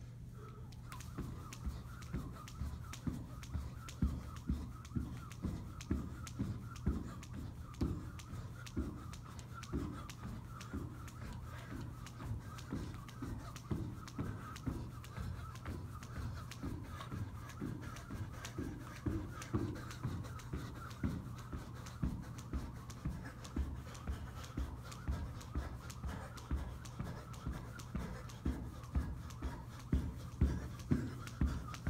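Jump rope in steady use by a jumper in a 30 lb weighted vest: feet landing and the rope striking the carpeted floor in an even rhythm of about two thumps a second, over a steady low hum.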